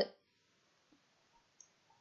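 Near silence, with one faint computer-mouse click about one and a half seconds in, after the end of a spoken word.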